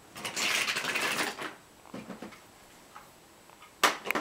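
Small toys clattering and rattling as a child handles them on a wooden train table: a dense run of clicks for about a second, a few light clicks after, and a louder knock near the end.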